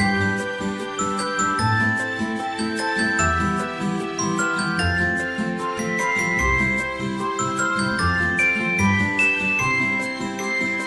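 Light background music with tinkling, bell-like notes over a steady beat.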